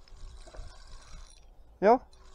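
Faint whirring of a spinning fishing reel being cranked as a hooked fish is wound in, with a low rumble of wind on the microphone underneath.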